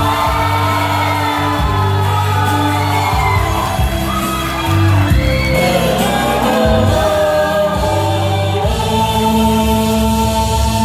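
A group of young men singing together into handheld microphones over loud amplified backing music with sustained bass notes.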